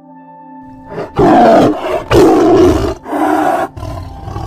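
Tiger roaring: three loud calls about a second apart, then a quieter one trailing off near the end.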